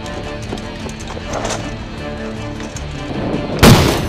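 Background music with one loud gunshot sound effect near the end.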